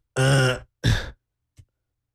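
A man's voice making two short wordless vocal sounds, the second shorter and falling in pitch, then near silence.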